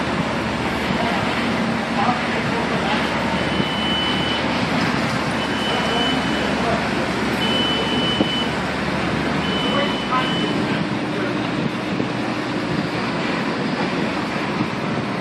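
Mobile crane diesel engines running steadily under load. Four evenly spaced high beeps, each about a second long, sound over the engine noise in the first half.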